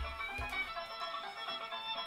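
Stringed instruments sounding soft sustained notes at several pitches at once, with a short sliding higher note near the start.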